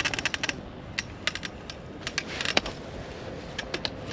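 Bicycle freewheel ratchet ticking as an e-bike coasts up to a stop, the clicks rapid at first and then thinning out and coming in scattered runs as it slows.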